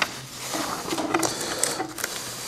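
Paper pages, most likely of a Bible, being handled and turned on a lectern close to the microphone: a soft rustle with a few small clicks.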